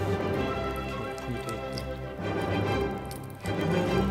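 Background instrumental music with sustained notes.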